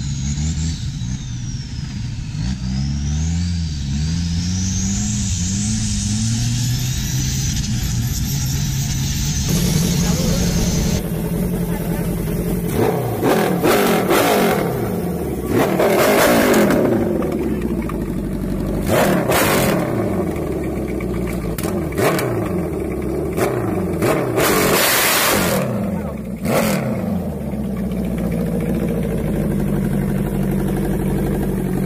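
Engines revving up and down across a run of short clips, the pitch rising and falling again and again. Loud bursts of noise come through several times in the second half.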